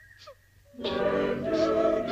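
Orchestral film-score music. A nearly quiet stretch with a faint held high note and a few short sliding notes comes first. A little under a second in, the full orchestra and voices come in loudly and hold.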